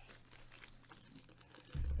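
Faint handling noise of a hard plastic graded-comic slab being turned over in the hands. A low rumble comes in near the end.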